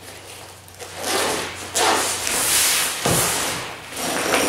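Zip of an Arc'teryx Brize 25 rucksack being pulled open in a few strokes, with the pack's nylon fabric rustling as it is handled.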